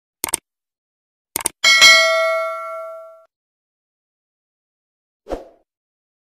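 Subscribe-button animation sound effects: two quick double mouse clicks, then a bright bell ding that rings out for about a second and a half. A short soft pop comes near the end.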